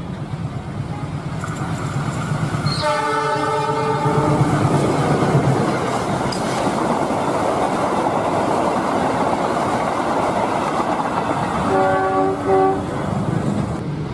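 A diesel locomotive hauling passenger coaches passes close by, a steady rumble of engine and wheels on rails that builds over the first few seconds. Its horn sounds a long chord about three seconds in and a shorter one near the end, warning at a level crossing.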